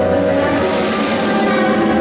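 Mixed improvising ensemble playing together as a loud, dense, steady mass of many held notes and noise.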